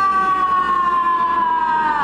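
A loud, sustained synthesized tone with several overtones, sliding slowly down in pitch and then dropping away at the end: the cartoon's magic sound as She-Ra's sword fires its sparkling transformation beam.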